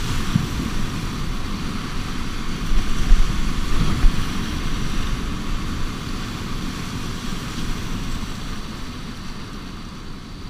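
Whitewater rapids rushing around a canoe, heard close up from its bow, with a heavier low rumble about three seconds in. The rush eases off near the end as the canoe runs out into calmer water.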